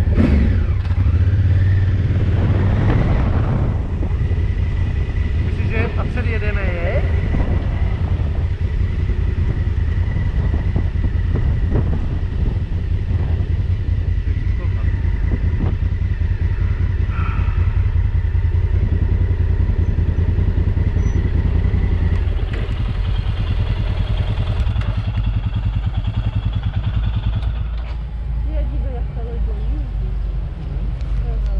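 Motorcycle engine running with road and wind rumble while riding, then easing off about twenty-two seconds in as the bike slows to a stop.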